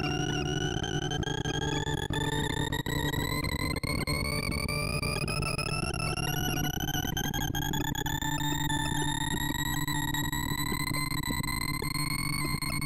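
Synthesized sorting-visualizer tones from ArrayV running a bead (gravity) sort: a buzzy electronic tone climbs slowly and steadily in pitch in small steps as the array writes go on. Under it sit a steady low drone and a grainy crackle.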